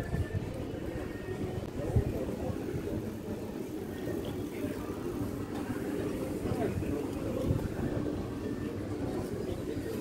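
Street ambience of a pedestrian shopping street: a steady background of indistinct voices of passers-by, with a single knock about two seconds in.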